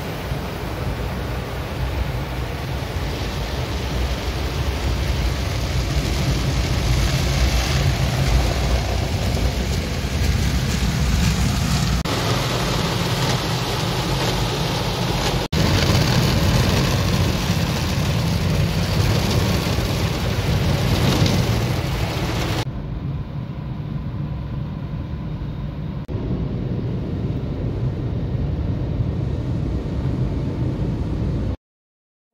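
Automatic soft-cloth car wash heard from inside the car: water spray and spinning cloth brushes washing over the body and windows as a steady rushing noise. It briefly drops out about halfway through, and in the last third it turns duller, with less hiss.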